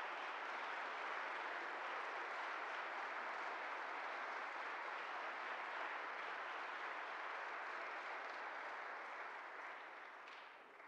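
Audience applauding, a steady even clatter of many hands that begins to die away near the end.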